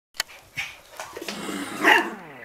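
Toy terrier at play with a cat: a few soft knocks and scuffles, then one loud yap near the end.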